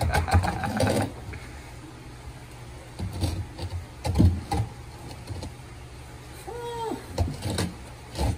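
Dry porous reef rock knocking and scraping against the rim and walls of an acrylic aquarium as it is tried at different angles, a few separate knocks over a steady low hum, with laughter in the first second.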